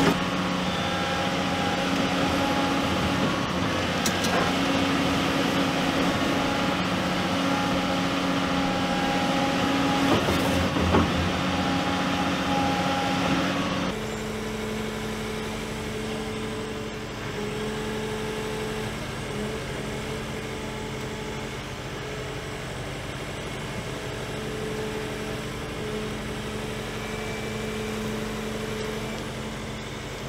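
Diesel engine and hydraulics of a Doosan DX235LCR-7 crawler excavator running steadily while it works. About halfway through, a cut brings in the slightly quieter, steady running of a Doosan DX100W-7 wheeled excavator digging sand.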